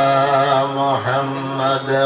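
A man chanting in Arabic, drawing out long melodic notes that waver slightly in pitch, with a short dip about a second in and a brief break near the end.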